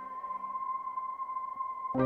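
A single steady, high-pitched electronic tone, held for about two seconds and then cut off.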